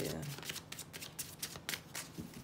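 A deck of tarot cards being shuffled by hand: a quick, uneven run of card-on-card flicks.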